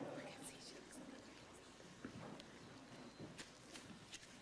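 Faint murmured, whispery voices, near silence otherwise, with a few light ticks.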